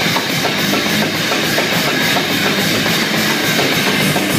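Live rock band playing an instrumental passage: electric guitars over a steady, driving drum-kit beat, loud and continuous.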